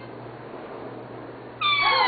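Indian ringneck parakeet giving one loud, drawn-out call that slides downward in pitch, starting about one and a half seconds in after a quiet stretch.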